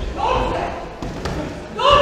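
Boxing gloves landing punches in a ring, a few dull thuds, with loud shouting from people at ringside just after the start and again near the end.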